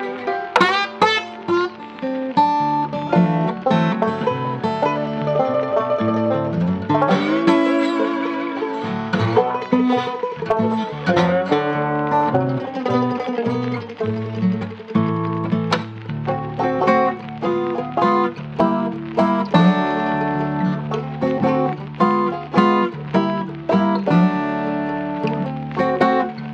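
Instrumental jazz-blues music with a lead of quick plucked string notes over a bass line, played continuously.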